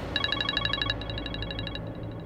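Mobile phone ringing with a rapid electronic trill of several high tones, an incoming call. The trill drops in level near the end.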